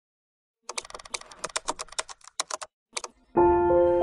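A rapid, irregular run of sharp clicks, like typing on a keyboard, lasting about two seconds. It is followed a little after three seconds in by music with held notes.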